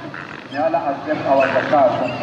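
A man's voice chanting in long, drawn-out phrases, with a crowd gathered for open-air Eid prayers behind it. It is the natural sound of the gathering, not narration.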